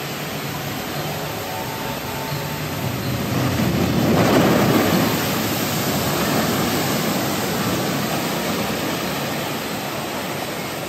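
Artificial waterfalls rushing steadily, then about four seconds in a flume ride boat plunges down the drop into the lagoon with a loud rushing splash of spray. Churning water goes on as the boat surges through the lagoon.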